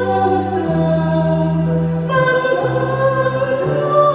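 Church choir singing a Vietnamese Catholic responsorial psalm setting over instrumental accompaniment, with held bass notes that move to a new pitch every second or so; the sung line grows fuller about halfway through.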